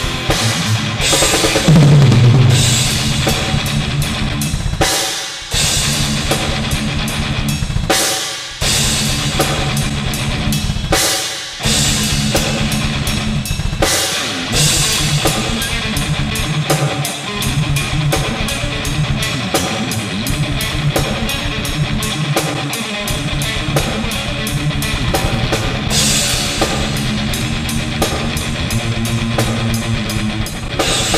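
Heavy metal played live on a drum kit with double bass drums, snare and cymbals, over distorted electric guitar, with fast kick-drum patterns. The band stops short briefly three times in the first twelve seconds.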